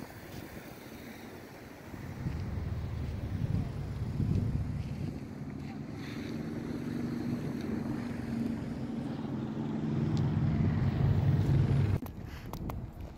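Wind buffeting the phone's microphone outdoors: a low, gusty rumble that swells and eases, strongest near the end.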